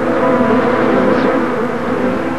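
A loud, steady buzzing drone of several held low tones from the cartoon's soundtrack.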